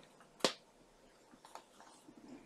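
A single sharp snap about half a second in as a page of a chipboard-and-cardstock scrapbook album is flipped over, followed by faint paper rustling.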